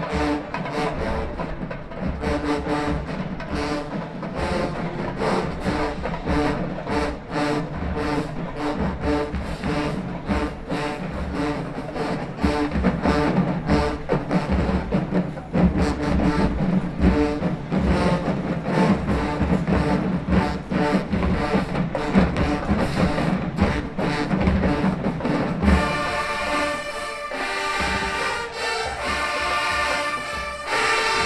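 Massed marching band playing: sousaphones and other brass over a driving drumline with cymbals. About four seconds before the end the drums drop back and the horns carry on holding chords.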